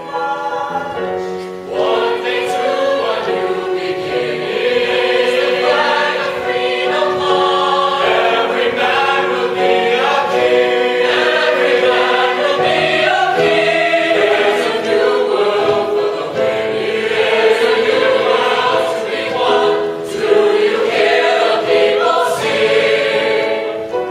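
Mixed choir of young voices singing a musical-theatre ensemble number in full chorus, getting much louder about two seconds in and staying loud.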